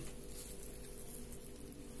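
Quiet room tone: a faint steady hum and hiss, with no distinct sounds.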